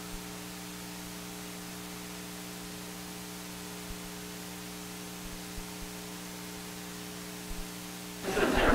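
Steady electrical mains hum with a constant hiss, broken only by a few faint, brief knocks.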